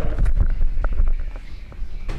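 Handling noise on a handheld microphone being moved about: low rumbling thumps and scattered clicks, heaviest in the first second and a half.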